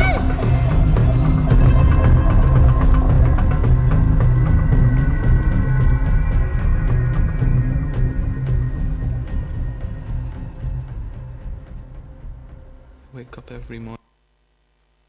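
Film soundtrack playing through a hall's speakers: music layered with voices and effects over a heavy low end. It fades down over the last several seconds and then cuts off abruptly.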